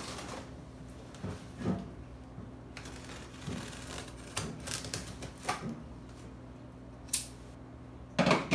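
Scissors cutting through packing tape on a cardboard box: a series of irregular snips, scrapes and crackles, over a faint steady hum.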